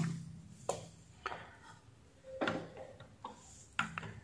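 A handful of soft, irregular clicks: buttons being pressed on a bench function generator's keypad to key in a new output frequency.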